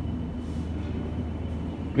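Steady low hum of a building's air-conditioning and ventilation system, with a faint steady high tone above it.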